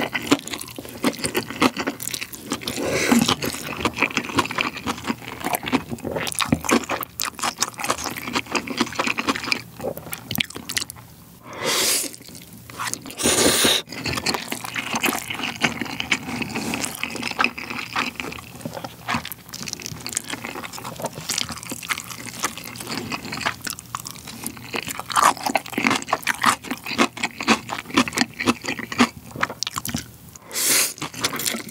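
Close-miked eating sounds: Chapagetti black-bean instant noodles slurped and chewed, a constant run of wet mouth clicks and smacks, with two louder, longer bursts near the middle.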